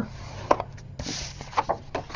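Cardstock being scored on a plastic scoring board and then handled: a short scrape of the scoring tool along the groove and a few light taps and clicks as the card is lifted off the board.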